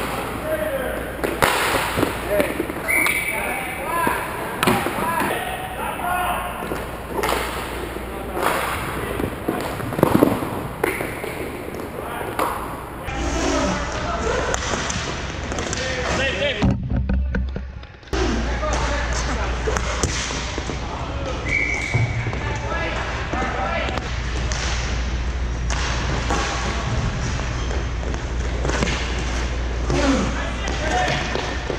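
Inline roller hockey play in a large indoor rink: repeated sharp knocks from sticks, the puck and players hitting the boards and goal, with indistinct shouts from players. The sound changes abruptly about a third of the way in and drops out briefly just past halfway.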